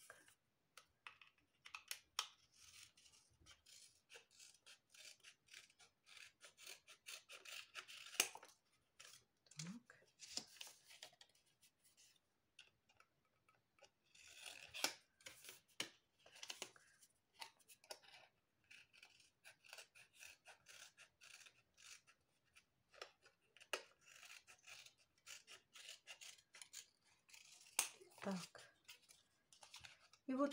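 Scissors cutting through thin plastic from a PET bottle: quiet, irregular snips and scratchy rasping of the plastic, coming in short runs with pauses between.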